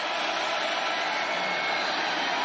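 Steady stadium crowd noise from a large football crowd, an even wash of many voices.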